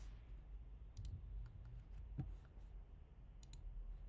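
A few faint, sharp clicks of a computer mouse, roughly a second apart, over a low steady hum.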